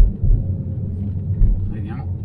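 Low, steady road and tyre rumble inside the cabin of a Tesla Model 3 rolling down a snow-covered road, with no engine note. A sharp knock comes right at the start.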